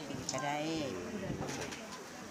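A dove cooing, a low steady call, behind a woman's speaking voice.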